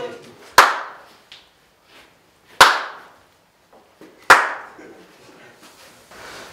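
Three single, sharp hand claps, about two seconds apart, each leaving a short echo in the room.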